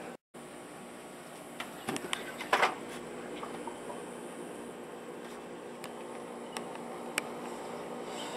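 A steady machine-like hum, with a few faint clicks and knocks around two to three seconds in and single ticks near the end.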